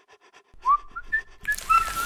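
Whistling in several short notes, each sliding up and then held, followed by a hiss that starts about a second and a half in.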